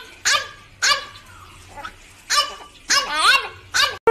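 A dog barking in about five short, pitched barks with uneven gaps between them.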